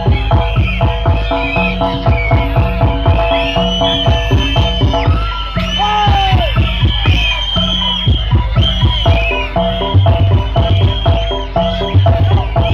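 Loud traditional Javanese percussion music accompanying a bantengan bull dance: a fast, steady drum beat under held pitched tones, with high gliding shouts or whistles over it.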